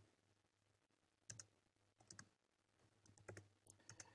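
Faint keystrokes on a computer keyboard, in a few short bursts of clicks as commands are typed.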